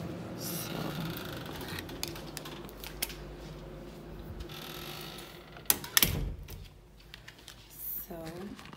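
Key-card door lock and door being worked by hand: rustling handling with a few clicks, then two sharp clicks and a thump about six seconds in as the door latch catches.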